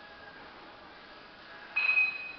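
A sudden high-pitched tone starts near the end and holds steady for well under a second, over quiet room noise.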